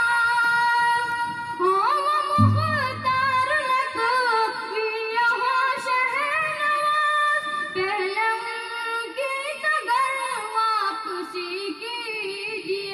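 A single high voice sings a naat, a devotional song, holding long notes and gliding and ornamenting between phrases. A low rumble sounds under the voice for about a second, about two and a half seconds in.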